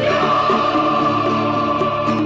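A choir of voices singing 'aleluya' as a response in a Neocatechumenal chant, holding long, steady notes.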